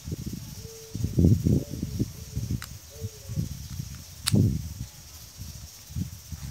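An 8 mm Allen key turning a bolt into the drive shaft of a CAV rotary diesel injection pump, with low knocks and handling noise and two sharp metallic clicks, the louder one about four seconds in.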